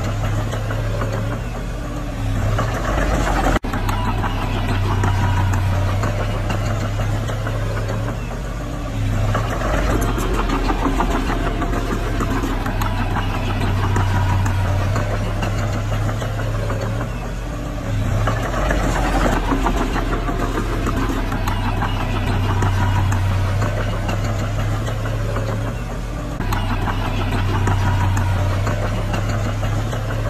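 Diesel engine of a small crawler bulldozer running steadily, its note swelling and easing every several seconds as the blade pushes soil. There is a brief break in the sound a few seconds in.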